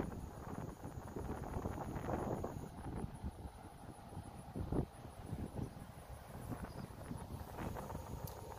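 Outdoor wind buffeting the microphone as a low, uneven rumble, with a few soft footsteps on pavers.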